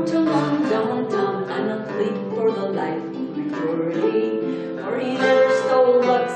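Irish harp and Irish bouzouki playing a Celtic folk song together, plucked strings throughout, with a woman's voice singing over them.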